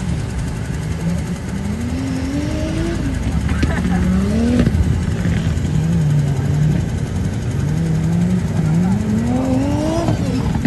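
Off-road 4x4's engine revving up and easing off several times as it is driven over rough dirt terrain, the pitch climbing in long pulls and dropping back between them.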